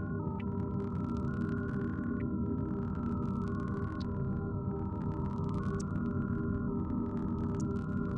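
Ambient electronic music: a steady low drone under a slowly stepping pattern of mid-pitched tones, with occasional faint high pings.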